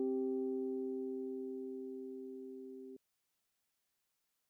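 Two notes a perfect fifth apart sounded together as a harmonic interval, with a smooth sine-like tone, fading steadily and cut off sharply about three seconds in.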